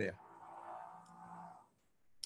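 A faint, steady hum from the speaker's voice between phrases, heard over a video-call link, that drops to silence shortly before the end.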